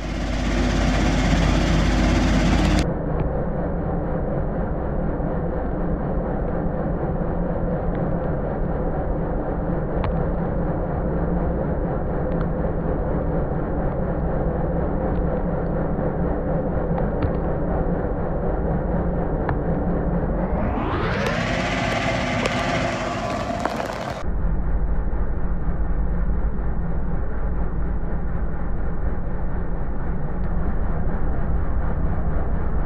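Klöckner KS 3012 mobile screening machine running under heavy feed, a steady mechanical hum and rumble as silicon carbide pours onto the vibrating screen deck. About two-thirds through, an engine revs up for a few seconds, its pitch rising steeply.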